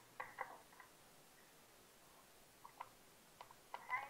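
Near silence: room tone with a few faint, brief sounds scattered through it, a small cluster just after the start and a few more in the second half.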